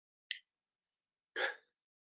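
Near-silent pause on a video call, broken by one short click about a third of a second in and a brief, breathy sound from a person about a second and a half in.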